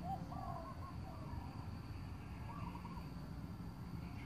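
Birds calling in several short, wavering phrases, over a steady low rumble.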